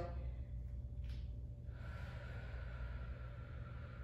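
A woman breathing near the microphone while doing Pilates bridge lifts: a short intake of breath about a second in, then a long soft exhale. A steady low hum runs underneath.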